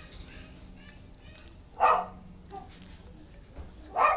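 A dog barking twice: two short, sharp barks about two seconds apart, one near the middle and one at the very end.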